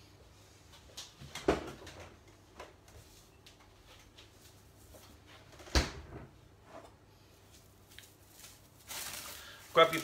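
Kitchen handling sounds while pastry dough is fetched: a few scattered knocks and clunks, the loudest about six seconds in, and a short rustle near the end.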